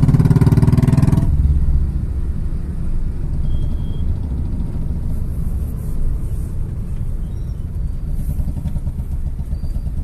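A scooter engine running close beside the car for a little over a second, then stopping, leaving the steady low rumble of idling traffic heard from inside the car.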